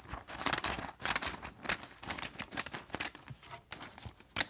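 Decorative wavy-edged craft scissors cutting through a sheet of paper: a run of irregular crisp snips with the paper crinkling as it is handled.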